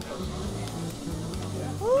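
Steam and smoke hissing out of the pressure-release valve of a Broaster Smokarama pressure smoker as the built-up cooking pressure is let off, under background music with sustained low notes.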